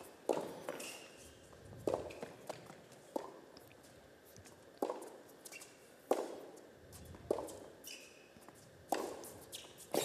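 Tennis ball struck back and forth in a rally: sharp racket hits about every one and a half seconds, each ringing briefly in the indoor hall, with a few short squeaks between them.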